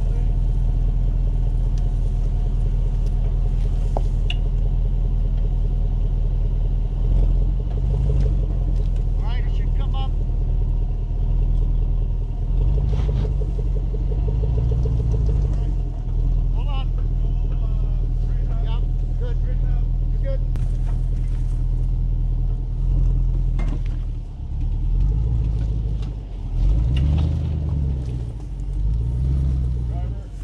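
L494 Range Rover Sport engine running at low speed as the SUV crawls through a ditch, a deep, steady rumble. In the last few seconds the engine note rises and falls unevenly.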